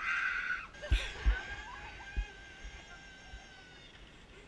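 A short high scream, then a few sharp thumps as a zipline trolley takes the rider's weight. Its pulleys then whine along the steel cable in a steady high tone that slowly drops a little in pitch.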